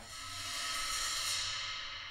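Dramatic soundtrack sting: a swelling, cymbal-like metallic shimmer that builds for about a second, then slowly fades.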